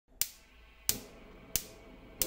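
Gas hob spark igniter clicking three times, about two-thirds of a second apart, as the burner ring is lit.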